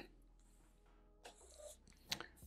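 Near silence: room tone, with a faint, brief sound about one and a half seconds in.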